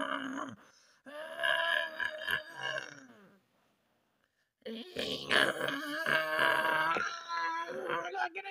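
A person's voice making wordless vocal sounds while voicing plush-toy characters: a laugh, a drawn-out sound that sinks in pitch, about a second of silence near the middle, then louder vocalizing.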